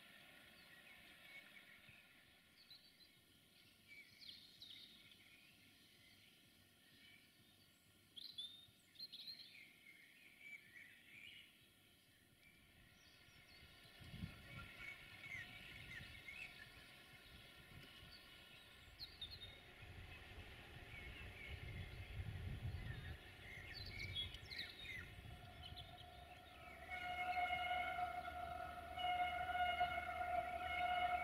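Faint outdoor ambience with scattered birds chirping, then a low rumble through the middle. Near the end a steady, held pitched tone comes in and grows louder.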